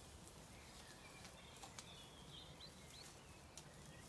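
Near silence: quiet pasture ambience with a few soft clicks and faint bird chirps near the middle.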